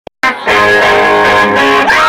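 Amplified electric guitar ringing out a sustained chord, loud, with a note sliding upward near the end into a long held tone.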